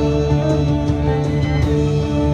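Live psychedelic drone-rock band playing: electric guitars and bass hold sustained droning notes over a steady drum beat.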